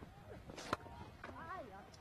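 A single sharp knock of cricket bat on ball about three-quarters of a second in, as the batter plays a slower ball, with faint distant voices around it.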